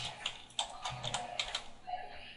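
Computer keyboard keys clicking softly as a web address is typed: a quick run of separate keystrokes.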